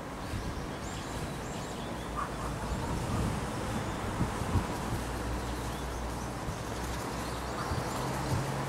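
Faint, short high bird chirps in the first few seconds, over a steady low outdoor rumble.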